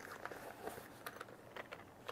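Faint handling noise: a few light clicks and taps as a small zippered carry case is turned over in the hands.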